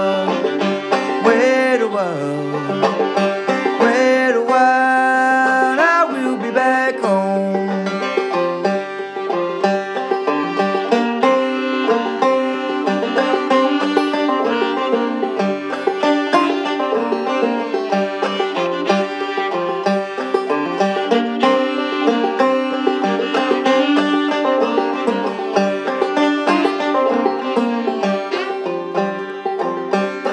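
Instrumental break of an old-time folk tune: a banjo picked in a quick, steady stream of notes under a bowed fiddle, which slides between notes in the first few seconds.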